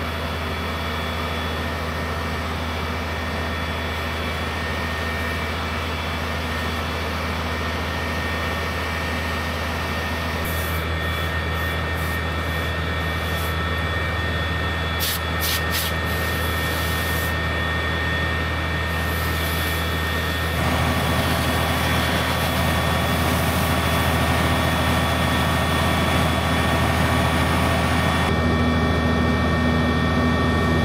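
Heavy engine running steadily with a deep hum over a wash of noise. It grows louder about twenty seconds in, with a few brief clicks shortly before.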